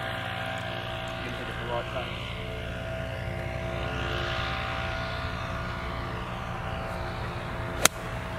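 A golf ball struck with a pitching wedge: one sharp crack near the end. Under it runs a steady engine drone with several held tones.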